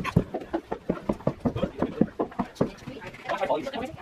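Quick footsteps on wooden stairs, about five steps a second, stopping about two and a half seconds in.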